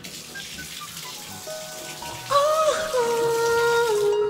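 Shower water spraying as a steady hiss. From a little past two seconds in, louder music with long held notes plays over it.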